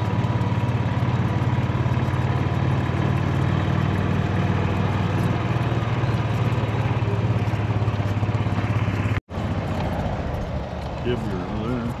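A small vehicle engine running steadily at constant speed. It cuts out abruptly about nine seconds in, then carries on quieter.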